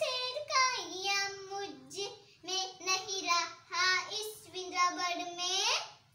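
A young girl singing solo, unaccompanied, in held notes; her last note sweeps sharply up in pitch and breaks off near the end.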